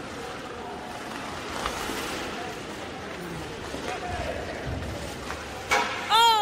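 Ice hockey rink ambience: steady arena noise with faint voices in the stands, and a sharp crack near the end.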